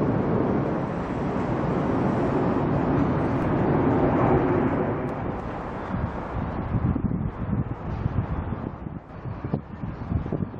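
Wind blowing on the camera microphone: a steady rushing noise that turns into uneven, gusty buffeting about six seconds in.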